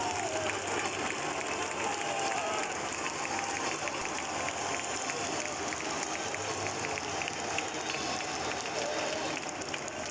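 Large football stadium crowd: a steady din of many voices with scattered clapping running through it, and some voices carrying above it in the first few seconds.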